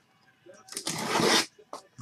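A short scraping rasp on a cardboard case, lasting under a second about halfway through, as a hand works against it.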